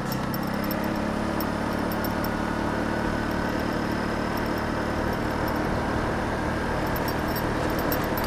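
A 150cc GY6 Chinese scooter's single-cylinder four-stroke engine running steadily while riding at a constant moderate speed, with wind and road noise. The engine is new and still in its break-in period.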